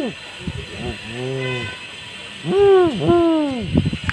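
A man imitating the hooting of an Indian eagle-owl with his voice. A soft low hoot comes about a second in, then two louder hoots, each rising and then falling in pitch, about two and a half seconds in.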